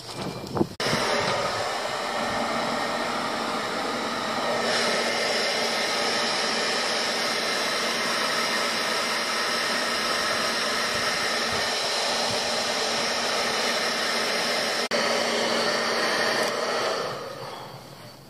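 Small electric blower motor with a fan running steadily, a whirr like a hair dryer's. It switches on about a second in and fades away near the end.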